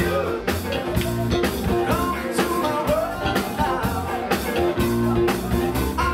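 Live rock band playing: a man singing lead over electric guitar, bass, drum kit and keyboards, the drums keeping a steady beat.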